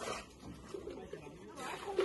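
Faint voices in the background, low and indistinct.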